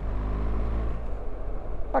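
BMW R1300GSA's boxer twin engine running with a low, steady drone as the motorcycle accelerates from about 30 mph.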